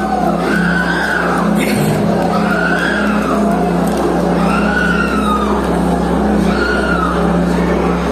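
Loud noise of a packed congregation at a live service, over a steady low drone of a keyboard or PA. A wailing cry rises and falls about every two seconds.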